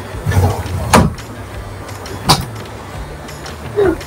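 Heavy rain pouring down outside a window, picked up as a steady low rumble over a video-call microphone, with two sharp cracks about a second in and just after two seconds.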